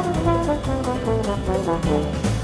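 Solo trombone playing a line of changing notes, backed by a jazz big band's rhythm section of double bass, drums and guitar.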